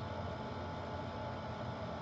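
Steady background hum and hiss of room tone, even throughout, with nothing else happening.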